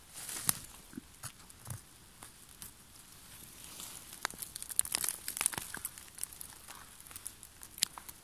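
Rustling, crinkling and small cracks as gloved hands part wet moss, twigs and leaf litter on a forest floor and pick funnel chanterelles, the clicks coming thickest about halfway through. A few footsteps on the soft forest floor come first.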